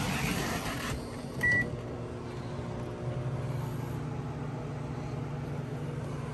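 A microwave oven gives one short keypad beep about a second and a half in, then starts running with a steady low hum.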